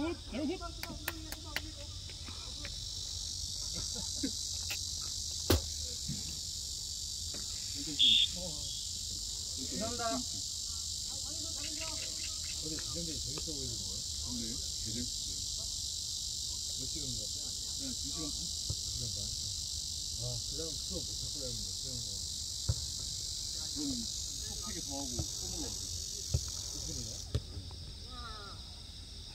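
A steady, high buzzing drone of cicadas sets in a couple of seconds in and cuts off near the end, over distant shouts, a few sharp thuds and a brief high whistle about eight seconds in.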